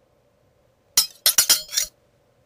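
About five sharp, glassy clinks in quick succession about halfway through, each with a brief ring, all over in under a second.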